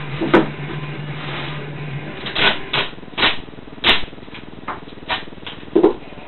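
Adhesive tape being pulled and pressed onto a polystyrene snake transport box: a run of short, irregular rips and clicks.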